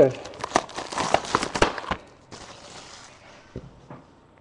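Trading-card packaging being torn open and crinkled: a quick run of crackles for about two seconds, then a softer rustle and a single click.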